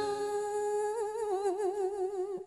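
A woman's voice holding one long sung note at the close of a line of chanted Vietnamese verse, steady at first and then wavering in a slow vibrato from about a second in.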